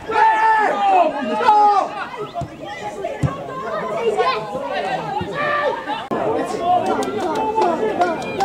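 Several voices of players and spectators calling out and chattering over one another at a football pitch, with a few short sharp clicks near the end.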